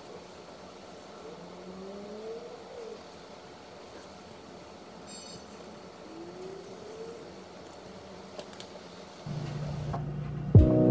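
Quiet room tone with faint distant traffic: a vehicle engine rises in pitch twice, about a second in and again around six seconds.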